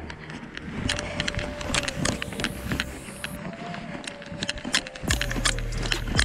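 Hurried footsteps crunching through deep snow, an irregular run of crackles with clothing and gear rustling. About five seconds in, a low rumble sets in, like wind on the microphone.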